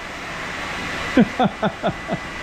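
Wet/dry shop vacuum running steadily, sucking dust and grit off a concrete floor through its hose. In the last second a burst of laughter breaks in over it.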